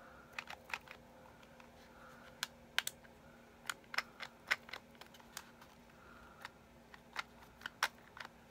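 Black plastic self-inking rubber stamp being pushed down and its lock worked by hand: a string of irregular sharp plastic clicks. The lock is not holding the stamp down.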